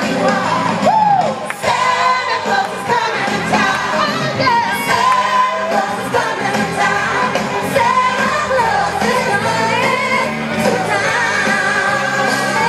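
Music with a singing voice, steady throughout.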